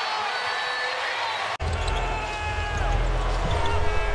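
Basketball game broadcast audio: a ball dribbling and sneakers squeaking on a hardwood court over arena noise, with a commentator laughing. About one and a half seconds in, the sound cuts abruptly to another game with a louder low rumble.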